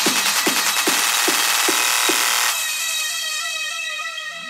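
Dark techno: a steady kick drum at about two and a half beats a second under dense synth layers. The kick drops out about two and a half seconds in, leaving high held synth tones and a run of short, repeating falling notes.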